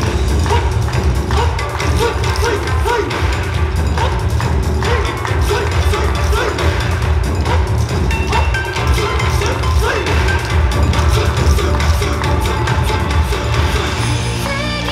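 Loud recorded YOSAKOI dance music played over PA speakers, with a driving percussion beat under a melodic line.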